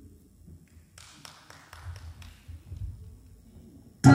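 A few faint, scattered hand claps, a handful of sharp strokes from about a second in to about three seconds in, over faint low thumps.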